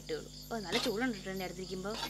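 Crickets chirping in a steady, evenly pulsing rhythm behind a person talking.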